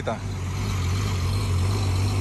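An engine idling nearby: a steady, even low hum.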